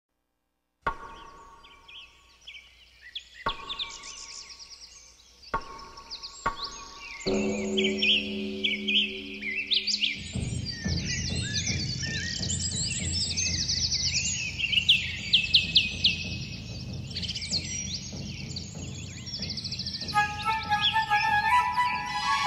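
Programme intro music over a recording of birdsong, with dense chirping throughout. Four bell-like ringing strikes sound in the first seven seconds. Sustained low tones then come in, and a melody of bright notes enters near the end.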